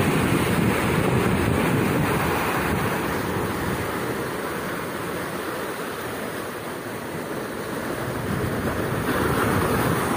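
Surf breaking and washing over coastal rocks in a continuous rushing noise, with wind on the microphone. It is louder at the start, eases in the middle and swells again near the end.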